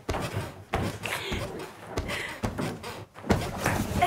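A person jumping on a bed: an irregular series of dull thuds as bare feet land on the mattress, with a last landing as she drops onto the bed near the end, and excited vocal sounds between the jumps.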